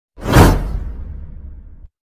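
A whoosh sound effect: a sudden swish that swells at once, then fades over about a second and a half with a low rumble underneath, and cuts off abruptly.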